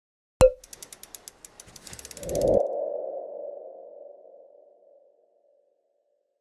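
Logo sting sound effect: a sharp hit about half a second in, a fast run of ticks, then a swelling whoosh that settles into a ringing tone fading out by about five seconds.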